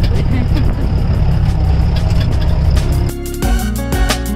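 Open-sided jeep driving on a rough dirt track: a loud, dense engine-and-road rumble with wind noise on the microphone. About three seconds in it cuts off abruptly and background music takes over.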